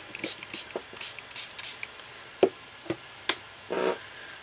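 Hand spray bottle spritzing clean water onto palette paper: a quick series of short hissing sprays through the first two seconds. A sharp tap about two and a half seconds in, the loudest moment, and a lighter click shortly after.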